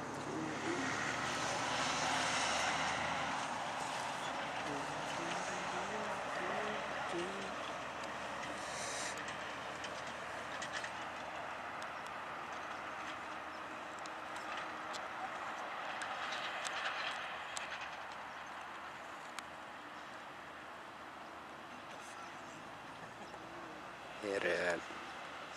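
Steady outdoor rushing noise, loudest early on and slowly easing, with faint distant voices talking a few seconds in.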